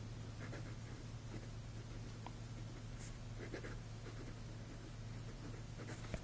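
Zebra V-301 fountain pen's hooded fine nib writing on lined paper: faint, short scratchy strokes and light ticks as words are written.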